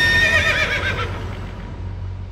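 A horse whinnying: one call of about a second with a quavering, shaking pitch, over a low music bed that fades out afterwards.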